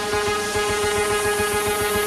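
Electronic dance music build-up: a held synth note with a rising noise sweep over a fast pulsing low beat.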